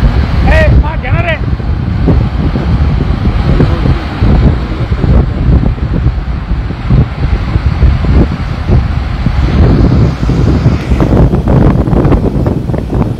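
Wind buffeting the microphone over the road and engine noise of vehicles driving along a highway, with a brief call from a person's voice about a second in.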